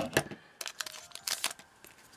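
Foil wrapper of a Yu-Gi-Oh booster pack crinkling in the hands as it is torn open and the cards are slid out, in short crackles about half a second and a second and a half in.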